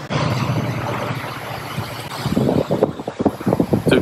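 A passenger train running past, a steady low rumble and noise, with wind buffeting the microphone unevenly in the second half.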